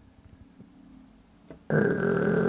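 A light click about one and a half seconds in, then a man's steady, low-pitched vocal hum that starts just after and is held without words.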